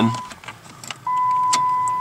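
Ignition of a 2007 Dodge Nitro switched off and back on: a steady high-pitched electronic warning tone cuts out just after the start, a couple of sharp clicks follow, and the tone comes back on about a second in and holds.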